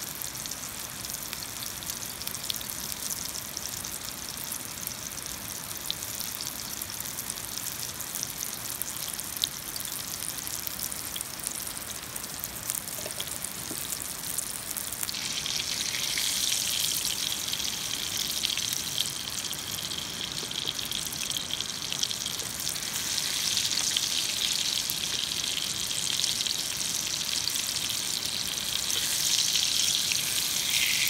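Cherry tomatoes sizzling in hot oil in a cast iron skillet, over the steady rush of a fast-flowing river swollen by rain. The sizzling turns sharply louder about halfway through.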